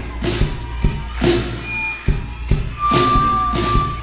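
Live rock band playing: drum and cymbal hits ringing out about twice a second over a sustained bass, leading into a song.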